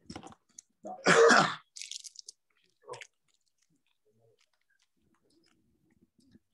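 A person chewing a crunchy snack close to the microphone, in a few short bursts with the loudest about a second in. It stops after about three seconds.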